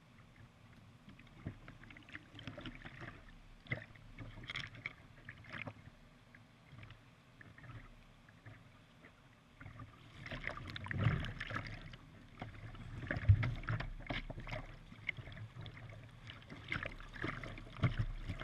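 Whitewater of a river rapid splashing and slapping against a plastic kayak's bow in irregular bursts, with the rush of the rapid beneath. The splashing grows louder about ten seconds in as the boat runs into rougher water.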